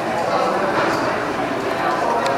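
Indistinct background chatter of several voices, with steady room noise of a large indoor space.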